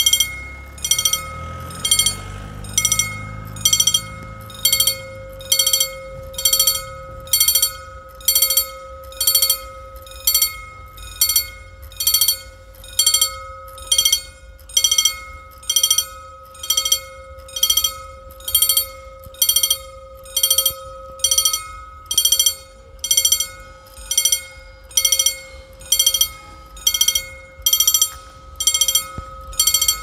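Level-crossing mechanical warning bell (EFACEC) striking steadily, about four strokes every three seconds, its ring carrying on between strokes. This signals that the crossing is closed for an approaching train.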